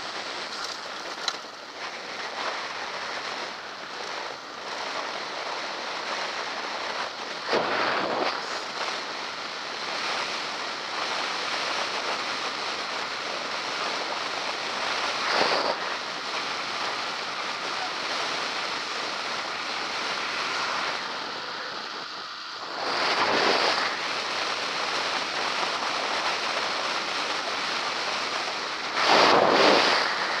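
Wind rushing over a head-mounted action camera's microphone, with tyre noise as a bicycle rolls along tarmac. The noise swells into four louder gusts, and there is one sharp knock about a second in.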